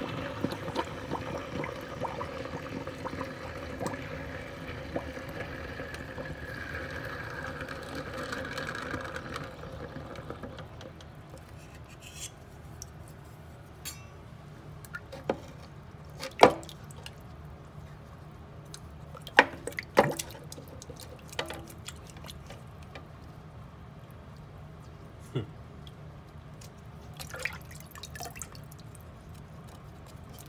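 Hot plaster-investment casting flask quenching in a pan of water: the water bubbles and hisses steadily for about the first ten seconds, then dies down. After that come quieter water sloshing and a few sharp knocks against the metal pan as the investment breaks away and the casting is fished out.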